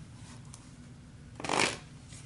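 A tarot deck being shuffled: one short burst of card shuffling about one and a half seconds in, over faint room noise.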